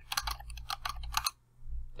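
Computer keyboard typing: a quick run of key presses that stops about two-thirds of the way through, as numbers are typed into a table.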